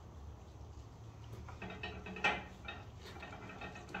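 Faint rubbing and squeaking of a coating applicator wiping ceramic coating onto a wheel's lip, with a sharp tick just past the middle, over a low steady hum.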